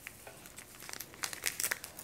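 Thin plastic zip-top bag crinkling as it is handled and cut with kitchen scissors: a scatter of faint small crackles and clicks, busier in the second half.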